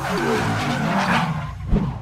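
Tyre-screech sound effect of a wheel spinning in a burnout, over a low rumble, building to about a second in and then dying away, with a sharp thump near the end.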